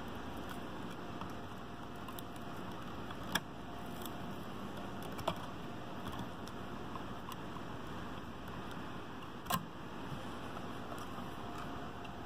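Small metal clicks and scrapes of a test light's probe tip and a small screwdriver picking at the melted fuse remains in a car amplifier's fuse holder, over a steady background hiss. Three sharper clicks stand out: about a quarter of the way in, near the middle, and about three-quarters through.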